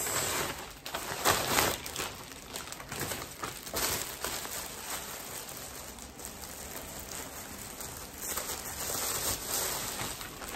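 Thin plastic shopping bag rustling and crinkling as it is handled and opened.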